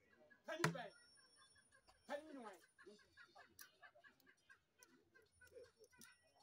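A single sharp tap about half a second in, a draughts piece set down on a wooden board, against a quiet background. A short murmured voice comes around two seconds in.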